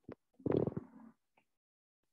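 A faint click, then a short, low, throaty vocal sound from a person, about half a second long.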